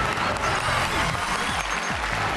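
Studio audience applause over the show's background music, which has a steady low bass line.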